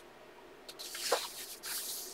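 A coloring-book page being turned by hand: a papery rustle and swish that starts about a third of the way in, in two swells, the first the louder.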